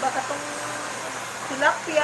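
A steady whirring noise, with brief talking over it near the start and near the end.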